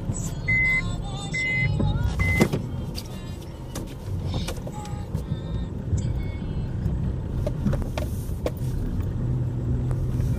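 Car interior while driving on a snowy road: steady low engine and road noise. A high beep repeats a little under once a second for the first two and a half seconds, then stops; clicks and knocks are scattered through.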